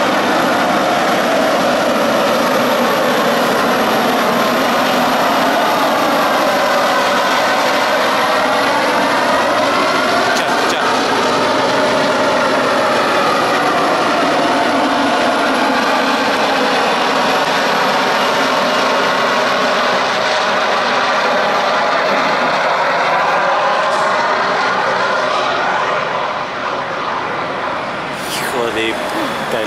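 International heavy truck's diesel engine pulling a 45-tonne excavator up a steep grade under full load, with a loud, steady jet-like whine whose pitch sweeps down and back up as the truck passes close by.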